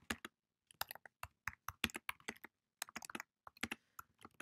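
Typing on a computer keyboard: quick, irregular keystrokes in short runs, with brief pauses between them.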